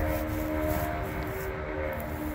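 A steady mechanical hum holding several fixed pitches, with a low rumble underneath.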